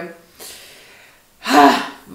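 A woman's short pause in speech: a faint breath, then about one and a half seconds in a brief, loud, breathy voiced exclamation before she speaks again.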